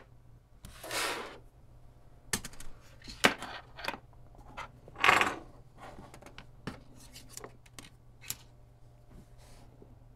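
Plastic clicks and scrapes of a USB-C cable and a small board's wired connectors being handled on a tabletop, with two short rasping scrapes, one about a second in and one about five seconds in.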